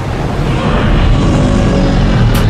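Monster-film soundtrack: a loud, steady deep rumble of sound effects with faint music underneath.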